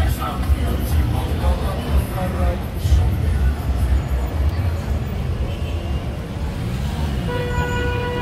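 Cars moving along a wet street, a steady low rumble with voices mixed in. Near the end a car horn starts and holds one steady note.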